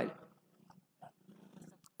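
Near silence: room tone with a few faint clicks, just after a man's voice trails off at the start.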